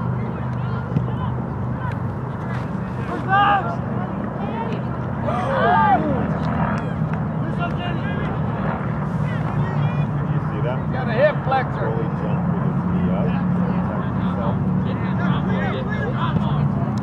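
Distant shouts and calls from players and spectators across a soccer field, a few short calls standing out about three, six and eleven seconds in, over a steady low hum.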